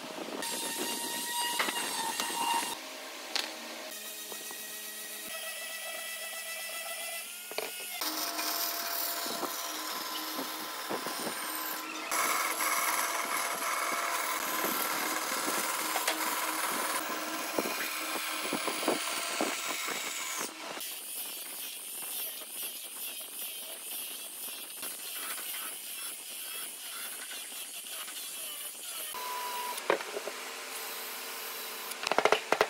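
A run of different power tools working wood, changing abruptly several times, with a band saw cutting through a thick block of pale softwood in the middle stretch.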